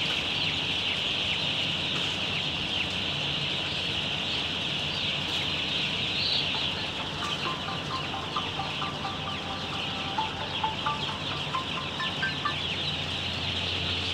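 Thousands of young broiler chicks peeping all at once in a poultry shed, a dense, unbroken high-pitched chorus, over a steady low hum.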